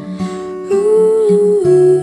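A woman humming a held melody over acoustic guitar, a louder hummed phrase coming in just under a second in.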